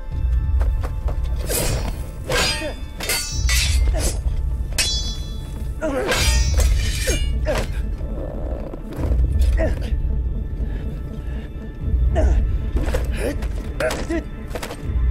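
Film sword-fight sound effects: a rapid series of sharp metal sword clashes and hits on armour, one with a high metallic ring about five seconds in, over dramatic score music with deep low drum swells roughly every three seconds.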